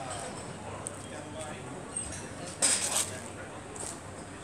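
City street ambience: faint chatter of distant voices over a low, steady traffic hum, with a brief loud hiss a little past halfway.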